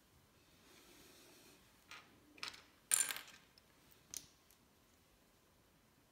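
Plastic LEGO bricks being handled and snapped together: a soft rubbing about a second in, then several short sharp clicks, the loudest around the middle.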